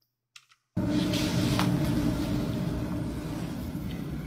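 Room tone of a handheld phone recording in a hallway: a steady low hum over a noisy hiss and rumble. It cuts in suddenly a little under a second in, after near silence, and slowly fades.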